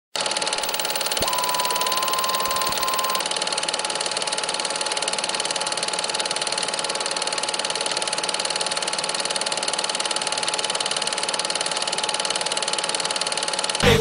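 A steady mechanical whirr and hiss of a vintage-style film-intro sound effect. A single held tone joins it about a second in and lasts about two seconds.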